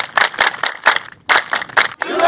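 A group clapping hands in unison: sharp, rhythmic claps about four a second, with a short break around one second in.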